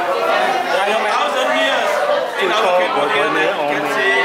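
Speech: a man talking, with chatter of other voices behind him.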